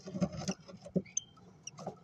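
A five-day-old cockatiel chick and its parent in a nest box of wood shavings: fast runs of scratchy clicks and chirps, densest in the first second, then a few short high peeps and a softer burst near the end.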